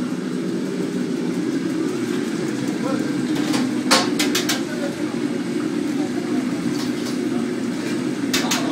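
Commercial kitchen at a gas range: a steady low roar of the kitchen, with a quick run of four or five sharp metallic clanks of steel pans and utensils about halfway through.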